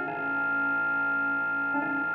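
Error Instruments Cloudbusting synthesizer with a Meng Qi Wingie resonator holding a drone of several steady electronic tones layered into a chord. Near the end a short click breaks the drone and the tones come back slightly changed.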